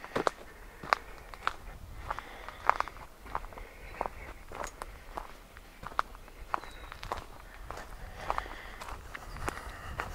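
Footsteps of a person walking at a steady pace on a dirt forest trail strewn with needles and leaf litter, about three steps every two seconds, each a short crunch.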